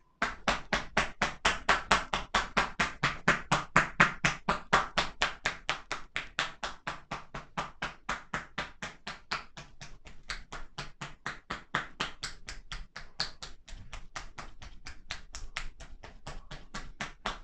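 Hands tapping rapidly on a seated man's shoulders and upper back through his shirt in percussion massage (tapotement), about five strikes a second. The strikes are loudest in the first few seconds and grow softer from about the middle on.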